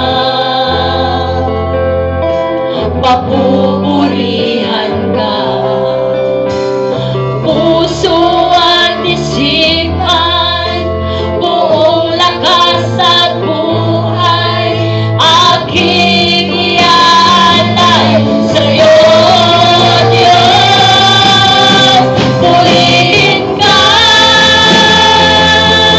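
Live praise and worship band: a woman sings lead in Tagalog into a microphone over electric guitar, bass guitar and drums. The music grows louder about two-thirds of the way through.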